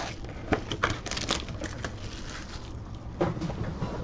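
Clear plastic shrink wrap crinkling and tearing as a trading-card hobby box is unwrapped and opened, with scattered light rustles and clicks from the box and pack being handled.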